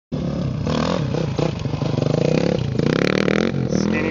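Honda CRF450R dirt bike's single-cylinder four-stroke engine revving up and down as it is ridden.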